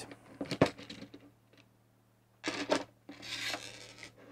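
Plastic housing halves of a Bosch 12 V cordless drill/driver being pried apart by hand. There are a few sharp clicks in the first second, a louder clatter about two and a half seconds in, then a scraping rub as the shell comes open.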